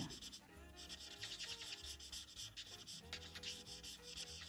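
Quiet background music with held notes, over faint repeated scratching strokes of a colourless alcohol blender marker's tip on card stock as the colour is blended.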